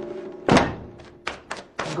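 A single heavy thunk about half a second in, fading out, followed by a few lighter knocks.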